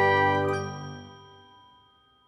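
The last ringing chord of a short outro jingle, with bell-like chime tones, dying away over about two seconds.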